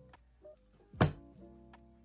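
Soft background music with a few held chords, and a single sharp thunk about a second in from a thick, floppy paperback book being handled.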